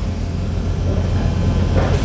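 Steady low rumble with a soft hiss above it, no distinct events.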